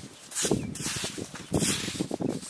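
Hands breaking apart and sifting lumps of damp, sandy mud, making soft crumbling rustles about half a second in and again near the end.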